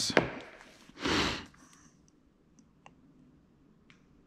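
A short breathy sigh about a second in, then a few faint clicks and taps from handling a small cardboard box.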